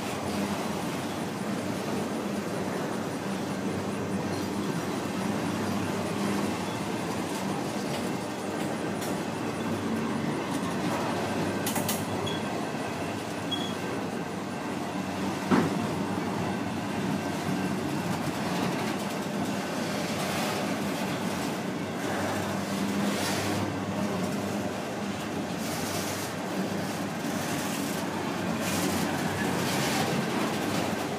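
Freight train of autorack cars rolling steadily past, with a continuous rumble of wheels on rail. A single sharp knock comes about halfway through.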